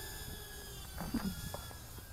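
Beta85X HD cinewhoop's brushless motors and ducted propellers whining in flight: several steady high tones. A short voice-like sound comes about a second in.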